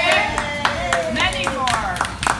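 A small group of people clapping their hands in scattered, uneven claps, with voices calling out over the applause as a sung greeting ends.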